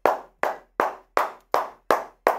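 One person clapping their hands in a steady, even rhythm: about six claps, a little under three a second.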